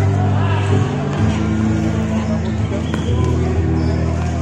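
A basketball bouncing on a hard court during play, with a few short impacts, over spectators' voices and music with held low notes.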